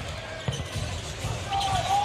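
Basketball being dribbled on a hardwood court: a run of repeated low bounces, with a brief high-pitched call or squeak near the end.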